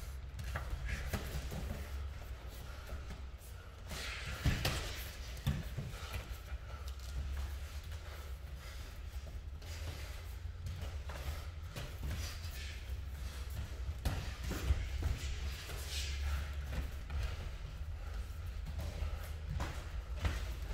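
Sparring with gloves and shin guards: irregular thuds and slaps of punches and kicks landing on gloves, guards and body, with footwork on the mats.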